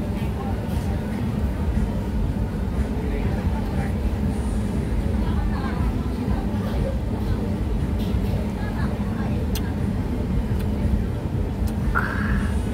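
Busy street ambience: a steady low rumble with indistinct voices of people talking in the background.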